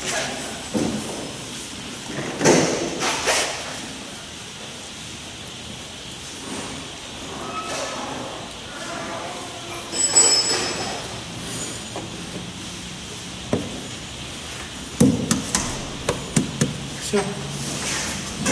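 Scattered metal clinks and knocks as the engine's front cover and its bolts are fitted by hand, with one ringing ping about ten seconds in and a quick run of clicks near the end.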